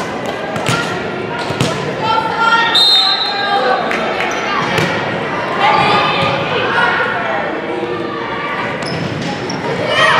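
Volleyball rally in a gymnasium: repeated sharp hits of the ball, echoing in the hall, mixed with players' shouts and calls and the voices of onlookers.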